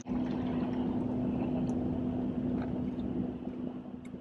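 Steady hum inside a car's cabin, with one constant low tone under an even rushing noise.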